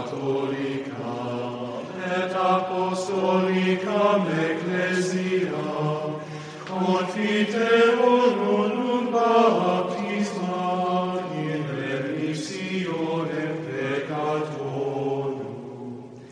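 Choral chant used as intro music: several voices sing long held notes that move slowly over a low sustained note. It fades out near the end.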